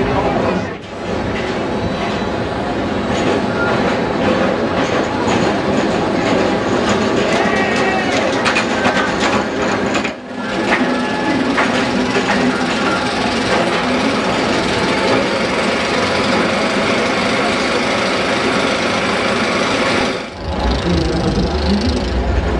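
Inverted steel roller coaster train rumbling and clattering along its track, over fairground crowd noise. The sound dips briefly three times.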